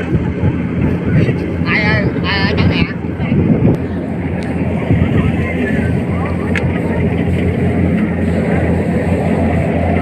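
Kubota combine harvester's engine droning steadily at one pitch, with wind buffeting the microphone. A voice calls out briefly, with a wavering pitch, about two seconds in.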